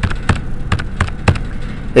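Plastic keys of a Texas Instruments TI-30Xa calculator being pressed, about six sharp clicks a third of a second apart, as the zero key is tapped again and again to enter 300 million.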